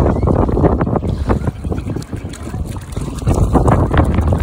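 Gusty wind buffeting a phone microphone, a loud uneven rumble, with shallow seawater splashing around a wading toddler.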